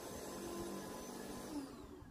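Faint, steady motor hum of a lawn scarifier running as it is pushed over a mossy lawn.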